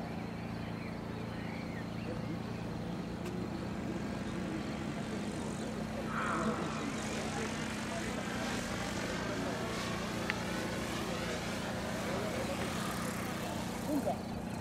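Radio-controlled model helicopter flying overhead: a steady low drone of rotor and engine, with a higher whine that rises and falls through the second half.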